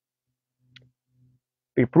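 Near silence with a single faint click about three quarters of a second in, then a man's voice starts near the end.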